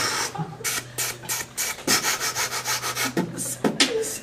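Beatboxing: a quick run of hissing hi-hat and snare sounds made with the mouth over a held low hummed note, with kick-drum beats coming back about two seconds in and again near the end.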